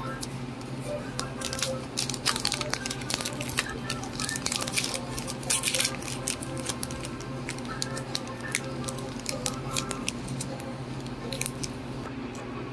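Foil wrapper of a Fortnite Series 3 trading card pack crinkling and tearing as it is opened by hand: a rapid, irregular scatter of crackles over a steady low hum.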